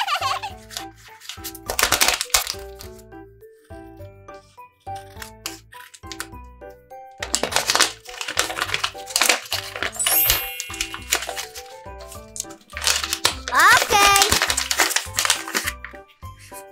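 Background music with a steady beat, over which a folded paper blind bag is handled and opened: paper rustling and crinkling in two spells of a few seconds, around the middle and near the end.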